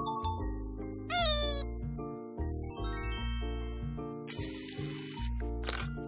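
Background music with a steady bass line, overlaid with edited sound effects: a short falling pitched glide about a second in, bright chime tones near the middle, and a hissing whoosh near the end.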